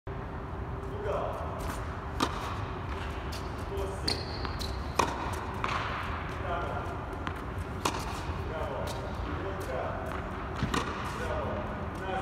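Tennis balls struck by rackets about every three seconds, with balls bouncing on the court in between, echoing in an indoor tennis dome. Voices talk faintly in the background.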